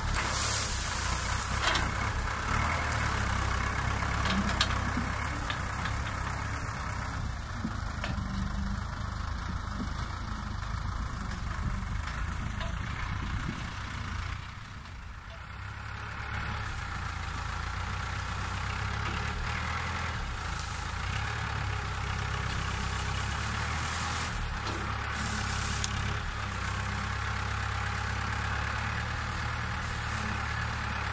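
Diesel engine of a tractor-mounted sugarcane grab loader running steadily as its grapple gathers and lifts bundles of cut cane, with a brief dip in loudness about halfway.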